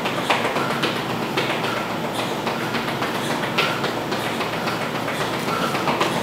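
Sneakers tapping and squeaking briefly on a tiled floor during squats, about two taps a second, over a steady rushing background noise.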